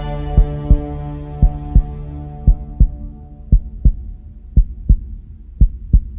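Heartbeat sound effect: a double thump, lub-dub, about once a second, under a sustained music chord that fades out over the first few seconds.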